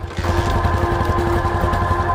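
Motorcycle engine running at a steady speed while riding, cutting in abruptly just after the start, with background music underneath.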